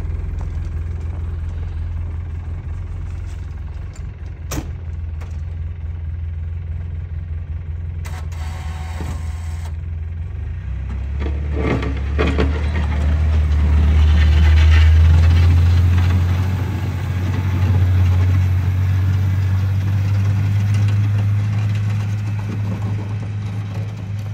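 Polaris Ranger UTV engine running as the vehicle plows snow with an angled blade. About halfway through, the engine note grows louder and rises in pitch under load, then holds higher, with a rushing hiss of snow being pushed.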